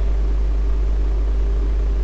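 A steady low hum with a faint hiss over it, unchanging throughout, the background noise of the recording.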